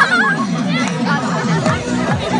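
A group of children chattering and calling out over music with a fast, repeated low beat.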